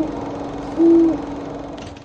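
Two short, low owl-like hoots about a second apart over a steady low drone, all cutting off abruptly at the end.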